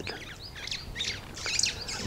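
Birds chirping: a string of short, quick high-pitched calls.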